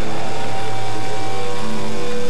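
Loud distorted electric guitar through stage amplifiers, a dense droning noise with several long held, ringing tones.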